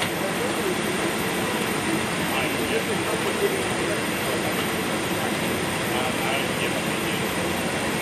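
Steady, even engine noise with a faint constant hum, under faint distant voices.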